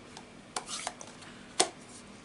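Plastic ink pad case being handled and set down: a few light clicks and knocks, with one sharper click about one and a half seconds in.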